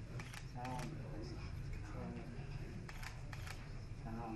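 Camera shutter clicks in two quick pairs, one near the start and one about three seconds in, over low voices in the room and a steady low hum.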